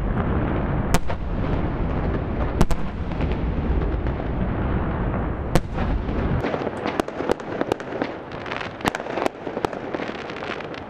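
Dynamite blasts going off in the hills, merging into a continuous low booming rumble with a few sharp cracks on top. About six seconds in the rumble drops away and a rapid scatter of sharp, firecracker-like cracks takes over.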